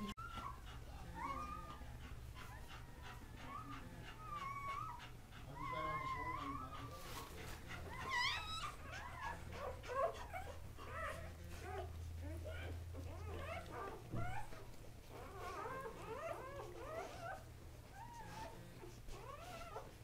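Newborn Kuvasz puppies squeaking and whimpering while they nurse: many short, high, wavering cries, one after another, over a steady low hum.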